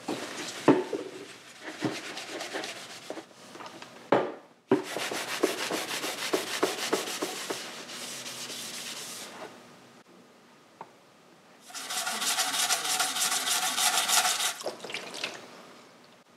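Green abrasive scouring pad scrubbed back and forth over the stainless steel silencer of a Husqvarna TR 650 Strada in runs of quick strokes with short pauses, cleaning the dirt off the metal. Near the end comes a louder stretch of scrubbing in which the silencer body rings with a steady tone.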